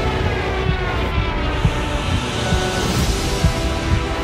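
A fighter plane's engine passing in a dive, its pitch falling, over a film score with a low beat about twice a second.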